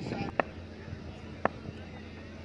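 Faint outdoor ground ambience with a steady low hum, broken by two sharp clicks about a second apart.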